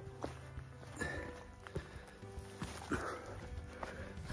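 A hiker's slow, irregular footsteps and boot knocks stepping down steep rock, about two steps a second, with faint rustling of pack and jacket. Faint music plays underneath.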